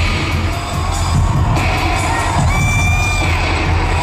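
Live electronic dance music over a large open-air concert PA, with a heavy steady bass beat and synth tones; a held high tone sounds for under a second just after the midpoint. The crowd cheers underneath.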